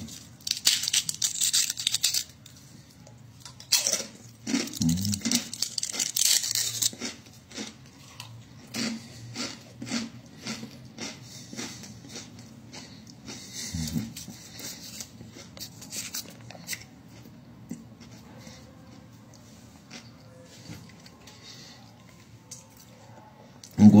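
A crisp fortune cookie being broken and crunched in the mouth: loud crackly bursts in the first several seconds, then a run of softer chewing clicks that thins out. Two brief low vocal sounds from the eater come in between.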